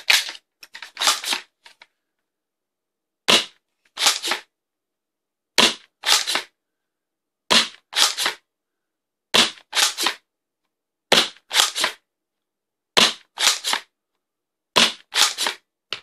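Worker Seagull spring-powered dart blaster being primed and fired over and over, in a steady cycle about every 1.8 seconds. Each cycle is a single sharp clack followed half a second later by a quick double clack.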